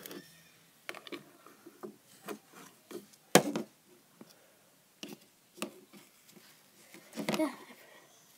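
Small plastic kinetic-sand cases being handled on a hard shelf: scattered clicks, taps and rubbing, with one sharp knock about three and a half seconds in.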